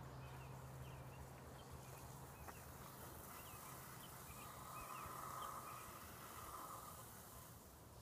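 Faint outdoor ambience with small birds chirping in the distance. A soft hiss of a garden hose spraying water onto a lawn mower starts about four seconds in and fades near seven seconds.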